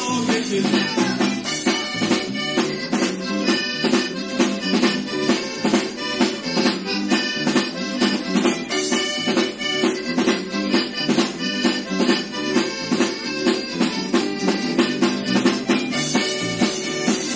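Rock band playing live, an instrumental passage led by accordion over a fast, steady drum beat, on an audience recording made with a portable cassette recorder and microphone.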